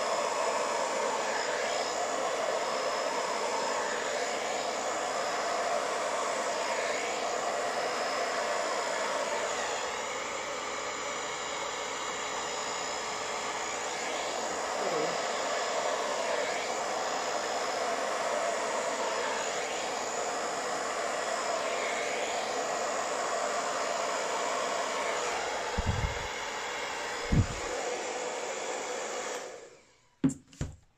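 Hair dryer with a nozzle running steadily, blowing a strong air stream, with a couple of short low thumps near the end before it is switched off suddenly.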